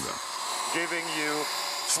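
Bissell PowerWash Lift-Off upright carpet washer running on a rug, a steady whirring motor and suction noise.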